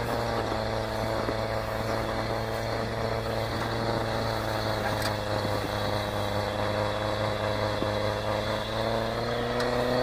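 Battery-powered electric snow blower running steadily while it throws snow: a constant hum with several tones, whose pitch sags slightly about eight or nine seconds in.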